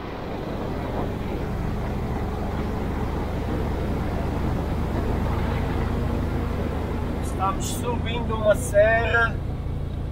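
A 1973 VW Kombi's air-cooled engine labouring uphill in first gear, a steady low rumble mixed with road and wind noise. The engine is running hot, its temperature climbing toward 130 degrees.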